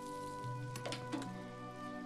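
Quiet film score of sustained low notes, with a few faint crackles about a second in.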